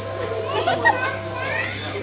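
Young girls' voices talking and laughing over a steady low hum.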